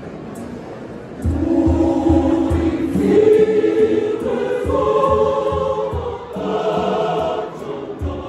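Large mixed choir singing in harmony, coming in loud about a second in, over a steady low drum beat.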